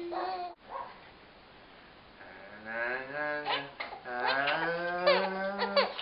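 A man's low, drawn-out playful vocal sounds in a few long held notes, starting about two seconds in after a short quiet pause, with a baby's high squeals over them.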